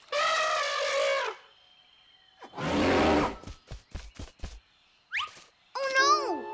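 Cartoon baby elephant trumpeting once, a call of about a second that falls slightly in pitch. About two and a half seconds in comes a short loud rush of noise, followed by a few soft thuds, and a quick rising whistle near the end.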